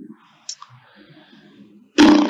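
A few faint, sharp clicks about half a second in, over low background hiss.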